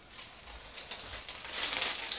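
Plastic shopping bag rustling and crinkling as it is carried, faint at first and growing louder over the last second.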